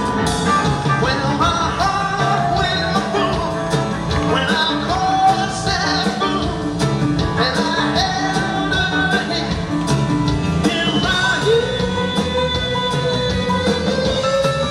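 Live rock band playing: electric guitars, bass guitar, drum kit and keyboards, with a man singing lead into a microphone. A long held note sounds over the band in the last few seconds.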